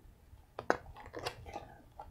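Paper page of a large picture book being turned: a sharp paper snap about half a second in, then softer crinkling and rustling.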